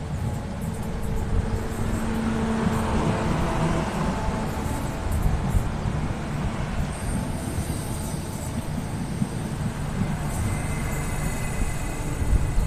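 Renfe class 465 Civia electric multiple unit rolling slowly into a station alongside the platform: a steady low rumble of wheels on the rails with a faint whine over it as it draws in to stop.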